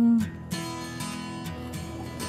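A woman's long, steady 'mmm' of pleasure at a bite of buttered toast, cutting off about a quarter second in. After it comes soft background acoustic guitar music with plucked notes.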